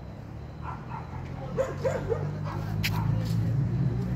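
A child's voice right up at the microphone: a few short squeaky sounds, then laughter near the end, over the rubbing and clicks of the phone being handled.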